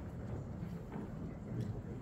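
Quiet pause: faint room noise in a large hall, with a couple of soft small knocks about a second in and again shortly after.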